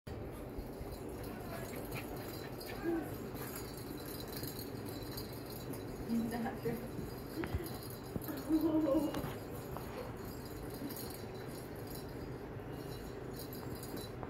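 Soft coated wheaten terrier puppies playing with a small cat-toy ball that rattles and jingles as they carry and nose it across the floor.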